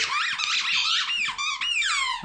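Squeaky toy balls being chewed by a Border Collie, giving a rapid run of high-pitched squeaks that glide up and down in pitch.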